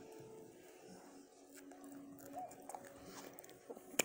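Faint chewing of a mouthful of pizza close to the microphone, with a few small mouth clicks.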